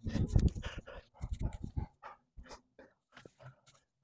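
An animal close to the microphone, panting and whining in short irregular bursts that are loudest in the first two seconds and then thin out.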